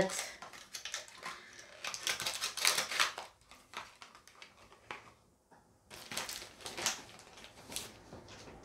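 Rustling and light clattering of items being handled on a tabletop, coming in a few short clusters with a quiet gap about five seconds in.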